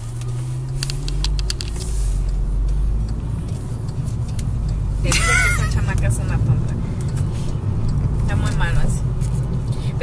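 Steady low road and engine rumble inside a moving car's cabin. A short burst of laughter about five seconds in, and brief voice sounds near the end.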